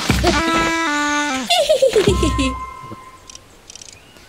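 Children's cartoon soundtrack: music with playful voice-like sound effects, a run of stepped falling tones and falling pitch slides, dying away about three seconds in.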